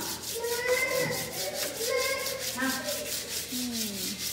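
Hand-sanding of wooden cabinet doors and frame: quick, rhythmic rubbing strokes, about five or six a second, with sandpaper on wood.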